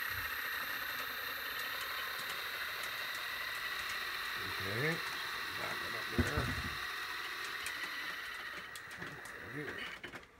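Small electric motor and gearing of an HO-scale Walthers powered crane running steadily as it rolls along the track, a constant whir with a thin high whine. The sound drops away at the very end.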